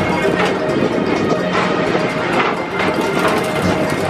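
Background music from the PeopleMover car's onboard speakers, playing between lines of the ride's recorded narration.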